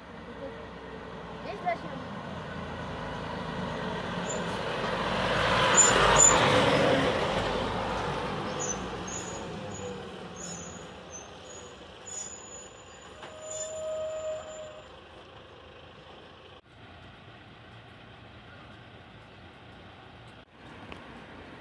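Volvo FMX fire engine's diesel engine as the truck drives past at low speed without its siren, growing louder to a peak about six seconds in and then fading as it moves away. A brief brake squeal comes about fourteen seconds in as it slows.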